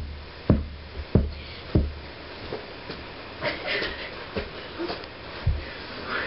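Dull, heavy thumps of punches landing in a mock fistfight: three about half a second apart in the first two seconds, lighter knocks after, then one more thump near the end.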